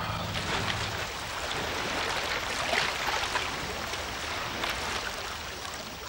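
Steady rushing noise of open sea water washing around a wooden jetty, with a faint low hum in the first second.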